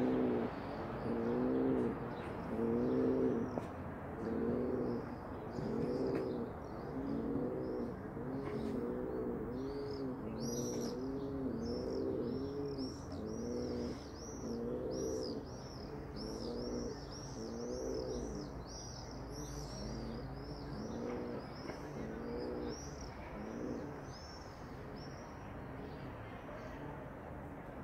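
Domestic pigeon cooing over and over, about one low coo a second. From about ten seconds in, a quicker run of high-pitched chirps from small birds joins it.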